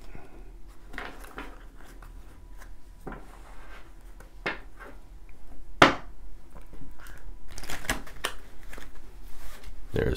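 A deck of tarot cards being cut and riffle-shuffled by hand on a wooden tabletop: light taps and slides of the cards, a sharp tap about six seconds in, then a quick run of ticks over the last two seconds or so as the two halves are riffled together.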